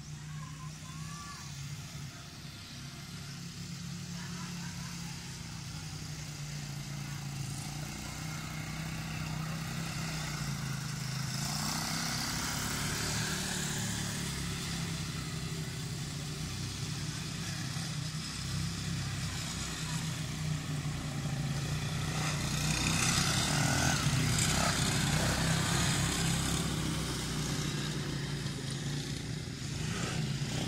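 Small ATV engines running steadily, growing louder as the quad bikes come closer.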